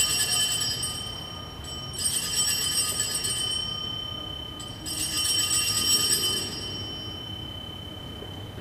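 Altar bells (Sanctus bells) shaken in three bursts a little over two seconds apart, each a bright jangle that rings on and fades, marking the elevation of the consecrated host at Mass.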